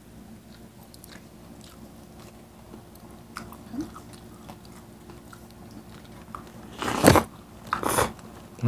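Close-miked eating at a table: soft chewing, lip smacks and small mouth clicks, then a loud crunchy bite about seven seconds in and another shorter one near the end.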